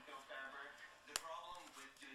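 Faint television talk in the background, with one sharp click about a second in as a foam roller's plastic clasp snaps shut.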